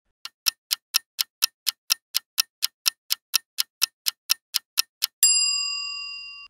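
Quiz countdown-timer sound effect ticking evenly, about four ticks a second. About five seconds in it gives way to a bright bell-like ding that rings on and fades, signalling the correct answer's reveal.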